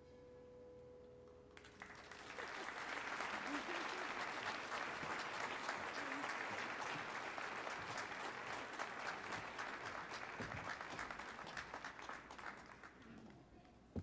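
A piano's last chord rings and dies away, then audience applause starts about a second and a half in, holds steady, and fades out near the end.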